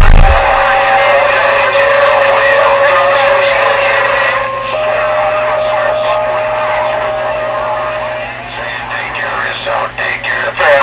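CB radio receiver on a strong, crowded skip channel: garbled voices of distant stations overlapping, with a steady whistle through them that jumps slightly higher in pitch about halfway through and stops near the end.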